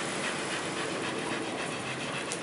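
Dogs panting amid a steady hiss of background noise.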